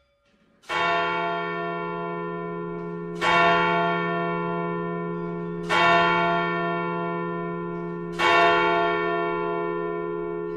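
A deep bell struck four times, about two and a half seconds apart, each stroke ringing on into the next, heard as the start of a recorded music track.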